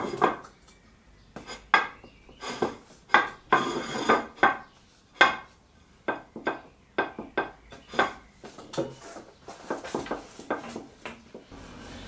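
A plate rocking on oak tabletop boards, clacking against the wood in irregular knocks as it is pressed and tilted. The wobble shows that the boards are still slightly uneven.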